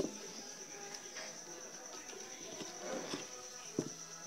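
Quiet handling of a plastic coin bank as a folded banknote is pushed into its slot, with one sharp click near the end. A steady, thin, high-pitched insect trill runs underneath.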